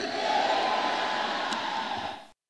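A congregation answering the close of a prayer with a long, held "Amen", many voices together in one sustained response.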